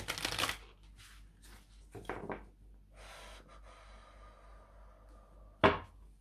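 A deck of tarot cards being riffle-shuffled by hand: a fast crackling riffle at the start, a shorter one about two seconds in, then a softer, longer rustle as the cards are bridged back together. Near the end comes a single sharp knock, the loudest sound, as the deck is squared on the wooden table.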